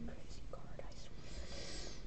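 A quiet lull: low steady hum and faint hiss of room tone, with a few soft ticks about half a second in and a faint breathy rustle in the second half.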